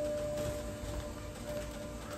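NexDome observatory's dome rotation motor running steadily as the dome turns to follow the telescope, a steady hum with a low rumble.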